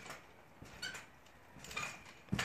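Faint sounds of a backyard trampoline as a child bounces and goes into a backflip: light creaks and soft taps from the mat and springs.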